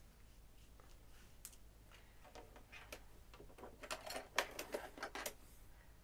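Faint rustling and irregular light clicks of hands handling and smoothing embroidered fabric, over a low steady hum.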